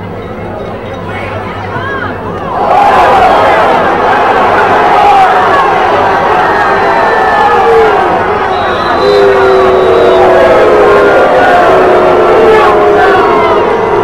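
Football stadium crowd cheering and yelling during a play. It jumps to loud about three seconds in and stays loud, with many voices shouting over one another.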